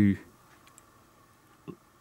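The tail of a spoken word, then a quiet pause broken by a few faint, brief clicks about half a second in and a soft tick shortly before speech resumes.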